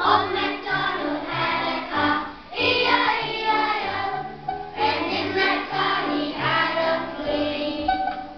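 A group of young children singing together with instrumental accompaniment.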